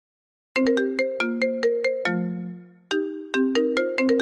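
Smartphone ringtone for an incoming call: a melody of quick notes starting about half a second in, dying away briefly just before the three-second mark, then starting again.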